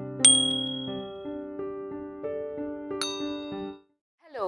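Subscribe-button animation sound effects: a sharp, bright bell-like ding about a quarter second in and a second ding near three seconds, over a short keyboard-style music jingle of stepped notes that stops just before the end.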